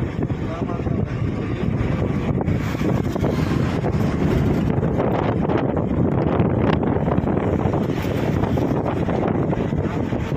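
Steady wind rumbling and buffeting on the microphone.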